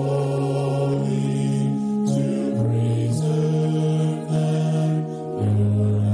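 Mixed choir of men's and women's voices singing a sacred piece, holding sustained chords that move to new notes every second or so.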